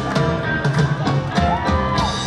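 Live rock band playing on stage: drum kit keeping a steady beat under electric bass and guitar, with some gliding notes.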